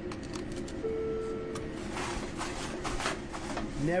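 French fries being scooped with a fry scoop and packed into cardboard fry cartons: a quick run of rustles and clicks. A short steady electronic beep comes about a second in, over a constant low kitchen hum.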